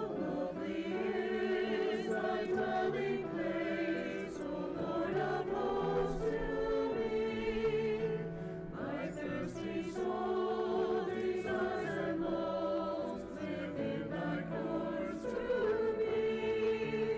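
Choir singing the offertory music, with sustained, wavering notes throughout.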